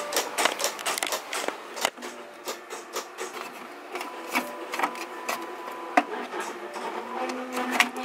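Desktop printer feeding paper and printing: a run of clicks and rattles, then a steady motor hum with scattered clicks from about two seconds in, growing stronger near the end.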